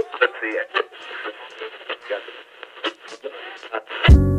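Thin, muffled voices with no low end, sounding as if heard over a radio or telephone, too garbled to make out words, with scattered clicks.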